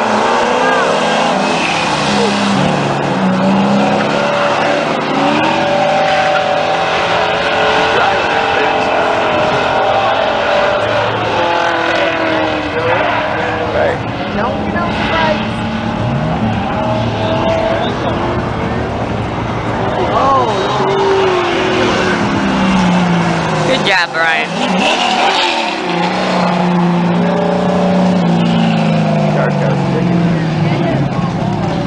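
Two street cars racing on an oval track, their engines revving hard and then easing, so the engine pitch keeps rising and falling as they lap and pass.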